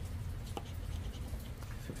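A paper lottery scratch-off ticket being scratched, its silver coating scraped off in faint, dry scraping strokes. A steady low hum sits underneath.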